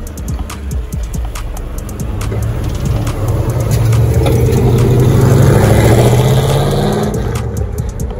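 Pontiac GTO's 455 V8 accelerating as the car drives past, its exhaust note building to its loudest about five to six seconds in, then fading as it pulls away.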